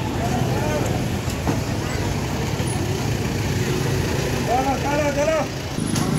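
Busy street ambience: a steady low rumble of vehicle traffic, with people's voices in the background and a voice calling out briefly near the end.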